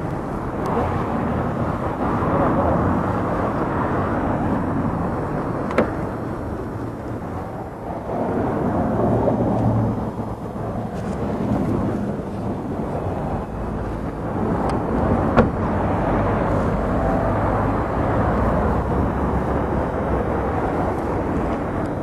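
Steady rumbling noise heard from inside a car cabin, with muffled, indistinct voices in it and two brief sharp clicks, the first about six seconds in and the second about fifteen seconds in.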